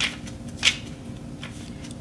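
Paper pages of a planner pad being flipped by hand: a few quick rustling flicks, the loudest about two-thirds of a second in.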